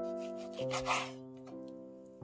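Chef's knife slicing through raw pork on a wooden cutting board, one scraping stroke about a second in, over background music.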